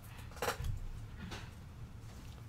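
Cardboard trading cards being flipped through by hand and set down on a desk: two short card sounds, the louder about half a second in and a softer one a little past the middle.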